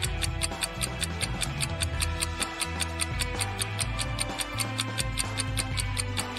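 Background music with a ticking countdown-timer sound effect, about four ticks a second, marking the time to answer.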